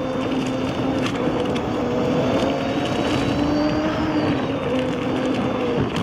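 Inmotion V14 electric unicycle riding along a dirt trail: a steady motor hum whose pitch drifts gently up and down with speed, over the rush of the tyre rolling on dirt and leaf litter.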